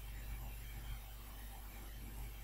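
Low, steady hiss with a faint hum underneath: the recording's background noise, with no distinct sound event.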